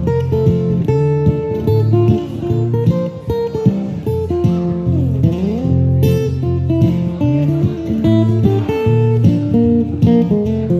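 Acoustic guitar played solo, picked notes and chords in a steady flow. About five seconds in, one note slides down and back up.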